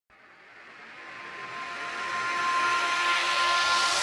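Music intro riser: a hissing noise swell that grows steadily louder from silence, with a faint steady high tone running through it.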